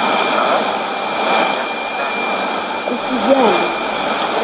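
Weak Swahili-language shortwave AM broadcast on 11770 kHz heard through a Sony ICF-2001D receiver's speaker: a faint voice buried in heavy hiss and static, with a thin steady high whistle running underneath. The voice comes through a little more clearly near the end.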